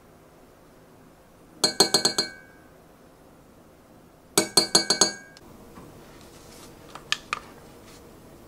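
Metal teaspoon clinking against the side of a Pyrex glass measuring cup while mustard is worked into the oil, in two quick runs of about five or six ringing clinks each, a few seconds apart, then a couple of fainter ticks near the end.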